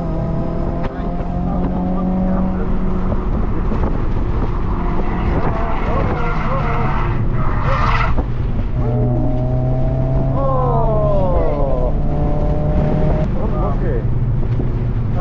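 Mazda MX-5 NC's four-cylinder engine running at steady revs on track, heard from the open-top cabin with wind noise. A brief rush of noise comes about eight seconds in, and the revs drop twice around ten to eleven seconds in.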